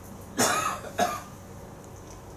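A person coughing twice: a longer cough about half a second in, then a short one a moment later.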